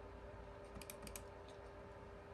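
A few faint, quick computer clicks about a second in, as an icon is clicked on a laptop, over a faint steady hum.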